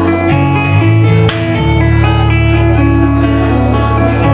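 Live band music led by a Telecaster electric guitar playing a run of sustained notes over a steady bass line, with a single sharp hit about a second in.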